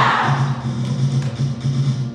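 Musical-theatre accompaniment with a steady pulsing bass beat and drum hits, with no singing. A loud burst of voices dies away at the start.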